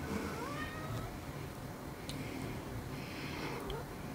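A faint animal cry that slides up in pitch near the start, with a shorter rising cry near the end, over a low steady room hum.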